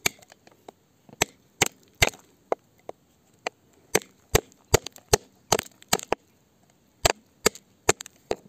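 Sharp clicking strikes of a pointed metal digging tool chipping into rocky soil and stone, about two to three strikes a second, with a short pause a little over six seconds in.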